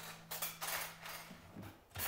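Kitchen drawers sliding open and shut while someone rummages through them, in a quick run of light knocks and rattles.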